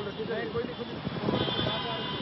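Several men's voices talking and shouting over one another in a crowd, with a brief high steady tone about one and a half seconds in.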